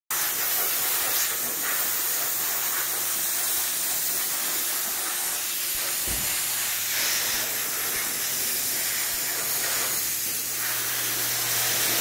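Steady hiss of water spraying from a hose wand onto a car, with a faint low hum underneath from about halfway through.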